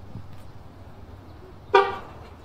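One short car horn toot near the end, over a low steady outdoor rumble.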